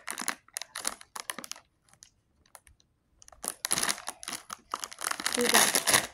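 Plastic blind-bag wrapper crinkling as it is handled and pulled open by hand. Short crackly bursts, a near-quiet pause midway, then denser crinkling in the second half.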